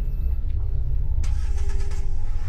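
A car engine running, a steady low rumble; a hissing rush joins in about a second in.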